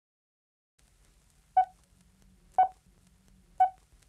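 Start of a pop song's intro: three short electronic beeps at the same pitch, one a second, over a faint low hum.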